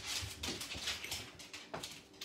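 A ceramic egg cooker and other items being handled and picked up from a kitchen counter: a few light knocks over a rustling noise.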